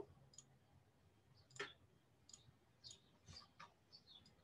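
Faint clicks of a computer mouse, about six of them at uneven intervals, the clearest a little past one and a half seconds in, while text on a slide is selected and highlighted.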